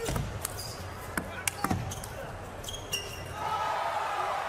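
A plastic table tennis ball gives a few sharp, irregular clicks as it is struck and bounces. About three seconds in, a rise of crowd voices comes in.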